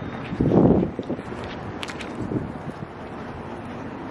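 Wind buffeting the microphone outdoors, a low rumbling noise with a stronger gust about half a second in and a few faint ticks.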